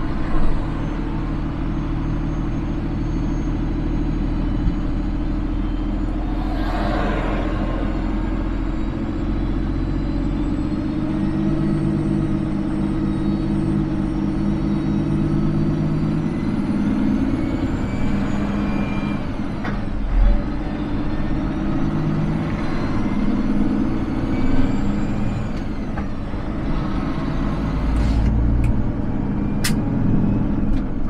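Heavy-truck diesel engine of a Peterbilt 389 running at low speed, heard from the cab, its note rising and falling. A short hiss sounds about seven seconds in, and a few sharp clicks come near the end.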